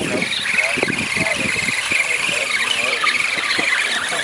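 Electric motor and gear drivetrain of a radio-controlled scale truck whining at a high, wavering pitch under load as it churns through thick mud.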